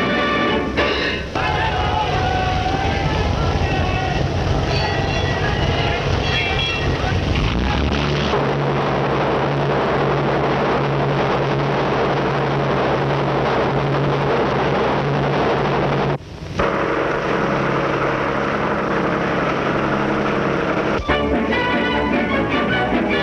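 Music on an old film soundtrack gives way, about eight seconds in, to crowd noise over a steady low hum. The sound drops out briefly near the sixteenth second, and music returns near the end.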